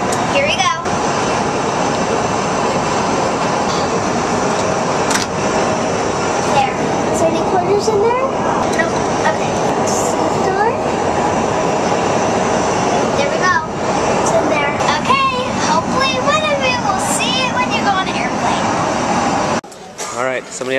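Steady, loud jet airliner cabin noise in flight, with a child's voice heard now and then over it. It cuts off suddenly just before the end.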